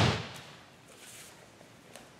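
The dying end of a thrown judo player's body slamming onto the tatami mat, fading out within a fraction of a second, then a quiet hall with faint shuffling of bare feet on the mat.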